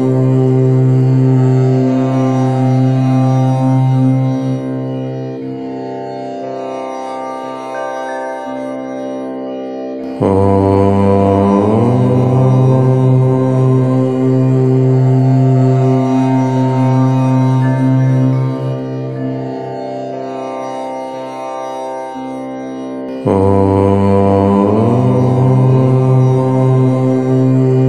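Long, drawn-out Om chanted by a low voice. Each Om lasts about thirteen seconds: loud at first, then held more softly for the rest of the breath. A new Om begins about ten seconds in and again near the end.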